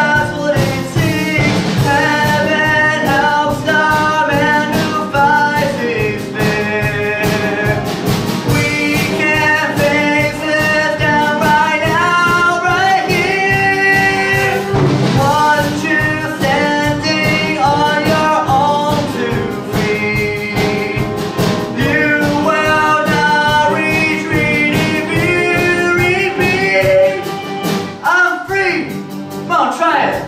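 A young male voice singing an up-tempo rock show tune over a band accompaniment with a steady beat.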